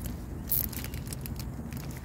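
Thin plastic bag crinkling and rustling under the fingers as it is bunched and tied around a citrus branch, with a sharper rustle about half a second in, over a low steady rumble.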